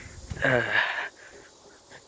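A person's short, breathy vocal sound falling in pitch, lasting about half a second, then quiet.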